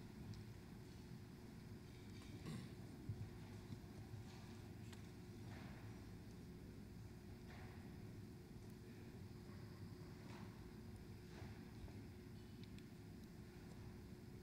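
Near silence: hall room tone with a low steady hum and a few faint, scattered soft knocks.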